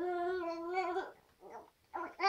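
A baby's drawn-out vocalization: one steady, pitched 'aah' lasting about a second, followed by a couple of faint short sounds.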